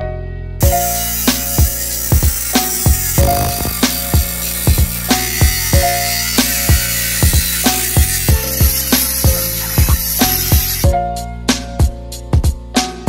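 Music with a steady drum beat over an angle grinder cutting metal, a dense hiss that starts about half a second in and cuts off just before the end.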